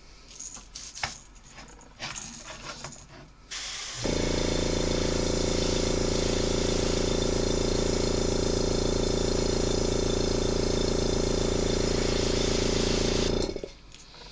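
An airbrush spraying black acrylic paint, driven by its small air compressor. A steady motor hum and an even air hiss start about four seconds in, run unbroken for about nine seconds, and cut off shortly before the end. Light clicks of the airbrush and lure clamp being handled come before it.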